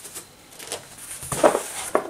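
A man's breathing and mouth clicks in a pause between spoken phrases, with a short, faint murmured sound about one and a half seconds in.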